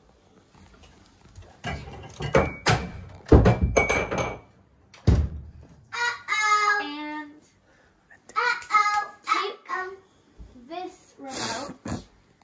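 A run of knocks and thumps, loudest about three seconds in, with a last thump about five seconds in, followed by a child's voice.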